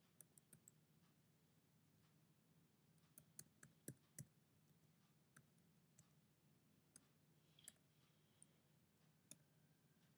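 Faint, irregular clicks of computer keyboard keys being typed, in small clusters with the loudest few about four seconds in, then sparser toward the end. A faint low hum runs underneath.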